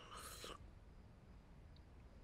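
A man sipping liquid from a porcelain spoon: one brief, soft slurp in the first half second.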